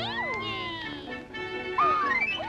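Early-1930s cartoon orchestral score with held notes, overlaid by swooping sliding notes that arch up and fall away. A new glide rises sharply near the end.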